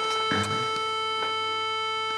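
Portable FM radio playing one steady, held electronic note picked up from a home-built FPGA FM transmitter on a DE0 Cyclone III board, which shifts its carrier between two frequencies near 104.6 MHz to make the tone. A brief knock about a third of a second in.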